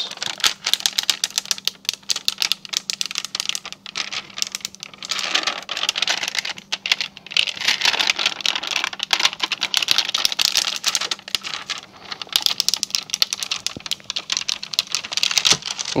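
Clear transfer paper being peeled off a vinyl stencil on a plastic disc while gloved hands press it down: a dense, irregular crackling and clicking of sticky plastic film lifting and crinkling.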